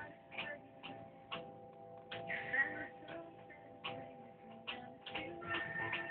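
Faint music with held notes, cut through by irregular sharp clicks every half second to a second.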